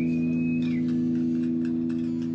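Steady droning chord from amplified electric guitars, held unchanged. A thin high whistle rises, holds and falls away within the first second.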